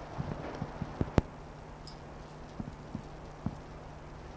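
Scattered light knocks and taps, about ten in all and irregularly spaced, the sharpest about a second in, over a steady low hum of room noise.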